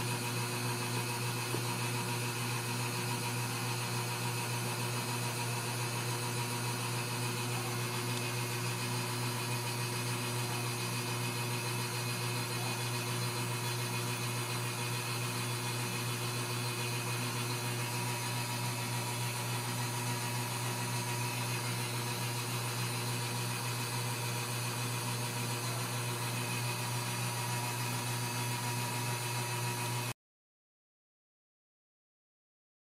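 A steady low mechanical hum with fixed tones and a faint hiss, unchanging throughout.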